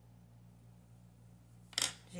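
A faint, steady low hum, then near the end one short, sharp sound.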